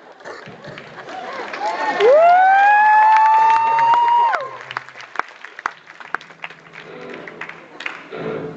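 Auditorium audience cheering, with one loud, long "woo" a couple of seconds in that swoops up, then climbs slowly and is held for about two seconds. Scattered claps follow.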